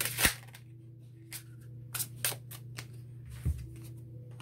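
Tarot cards being handled on a tabletop: a few short, sharp card clicks and snaps, the loudest about a quarter second in, and a dull thump near the end, over a steady low hum.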